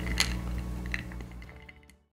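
Background music with steady held notes fading out to silence, with one short click just after the start.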